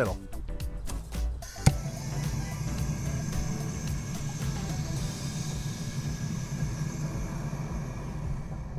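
A handheld grill torch clicks alight about a second and a half in, then burns with a steady hissing rush as its flame lights fire starters set in a wire fire-starter ball among used lump charcoal.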